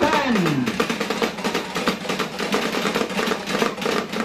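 Drumblek ensemble playing: barrel drums made from plastic drums struck rapidly with sticks in a dense, fast rhythm. A pitched tone slides steadily down in the first second.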